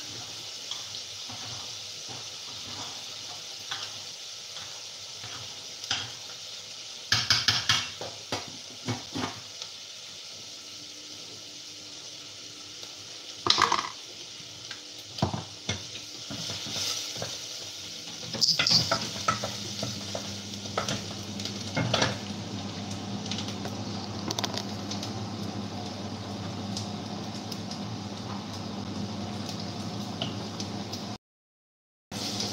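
Food sizzling steadily in a pot on the stove while a metal utensil stirs and scrapes, with scattered clinks and knocks of metal against the steel pots, the loudest bunched about a quarter, half and two-thirds of the way through. A low steady hum comes in past the middle.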